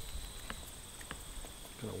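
Two faint clicks of hands handling parts at a small model glow engine, over a steady faint high-pitched whine; the engine is not running.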